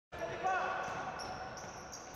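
Faint court sound of a basketball game: a basketball bouncing on a wooden court as players run, with a short pitched sound about half a second in.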